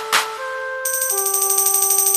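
Instrumental karaoke backing track with no vocals: two quick drum hits, then held synthesizer notes. Just under a second in, a high, fast-pulsing electronic tone comes in, like a ringtone, and carries on over them.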